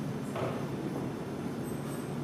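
Room tone in a presentation hall: a steady low hum with a faint even hiss, and a brief faint murmur about half a second in.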